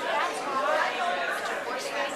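Several people talking at once in close conversation: overlapping voices.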